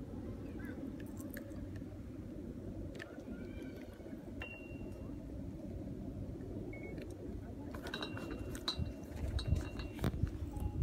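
Steady low rumble of wind on the microphone, with a cluster of short clicks and taps near the end as the fishing rod and spinning reel are handled.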